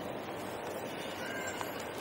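Steady background noise of a large airport terminal hall, with a faint short high tone about a second and a half in.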